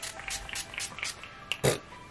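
Pump-action facial mist spray bottle (Mario Badescu) spritzed about six times in quick succession, each a short hiss. A louder single burst comes near the end, over soft background music.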